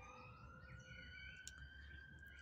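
Near silence, with a faint siren wailing, its pitch slowly rising and then falling, and a small click about one and a half seconds in.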